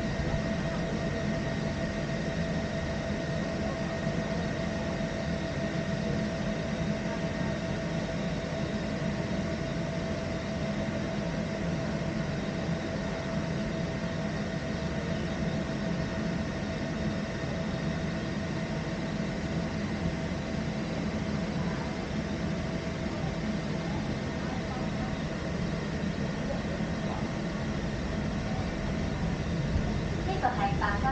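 Steady rumble of a fifth-generation Peak Tram funicular car running along its track, heard from inside the cabin, with a faint steady whine over it.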